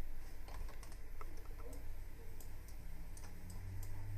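Computer keyboard and mouse clicks, a dozen or so short, sharp clicks at irregular spacing, over a low steady hum.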